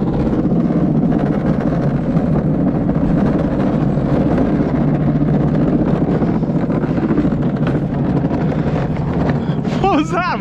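Luge cart rolling down a concrete track, a steady rumble. A short wavering voice-like cry comes just before the end.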